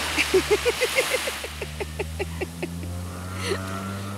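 A small child giggling in a quick run of short, pitched bursts that die away after a couple of seconds, over a steady low hum.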